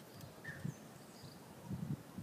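Quiet outdoor background with faint low rustling and a brief faint chirp about half a second in.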